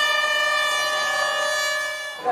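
Race-start air horn sounding one long steady blast, cut off suddenly near the end.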